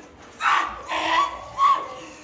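A person's high-pitched wailing cries, in three short bursts with pitch that bends up and down.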